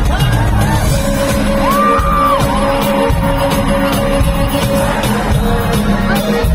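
Live pop band and vocals playing through an arena sound system, recorded from the crowd on a phone, with a steady held tone under one arching high note about two seconds in.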